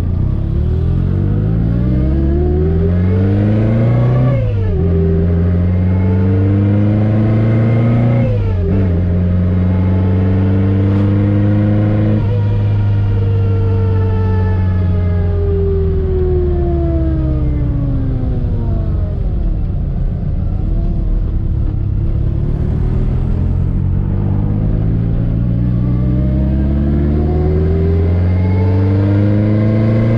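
Chevette engine with an AMR500 supercharger accelerating hard, its pitch and supercharger whine climbing and dropping sharply at upshifts about four and eight seconds in. Then, off the throttle, the whine falls slowly away before the engine pulls again near the end. The setup is not yet fine-tuned and runs retarded ignition timing.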